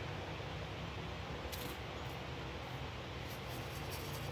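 Quiet steady low hum with faint background noise, and one faint light click about a second and a half in.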